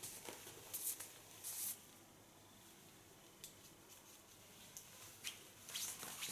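Hairdressing scissors cutting wet hair: two short, crisp snips in the first two seconds, then a few faint clicks of scissors and comb.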